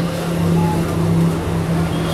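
A man's long, steady hum on one pitch with closed lips, a drawn-out "mmm" of hesitation held between sentences.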